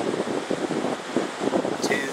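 Wind buffeting the microphone, with the even hiss of surf behind it.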